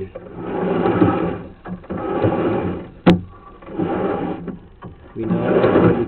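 Push rod of a drain inspection camera being fed into a sewer line in strokes: a sliding, rubbing noise that swells and fades four times, about a second and a half apart, with one sharp click about three seconds in.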